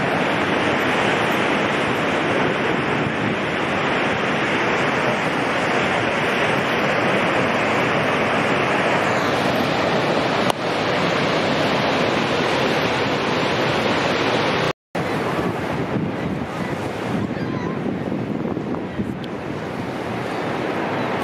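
Steady loud rush of Niagara's Horseshoe Falls close at hand, mixed with wind on the microphone. About fifteen seconds in, the sound cuts out for a moment, then resumes a little quieter and less even.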